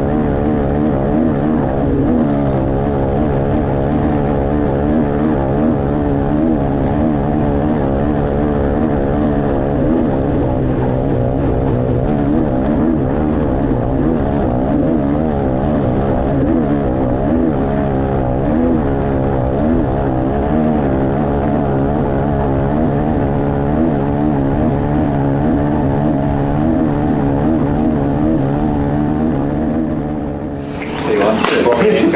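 KTM 500 EXC-F single-cylinder four-stroke dirt bike engine heard from on board, running hard and steadily at speed on a sand track, its revs wavering slightly without big changes.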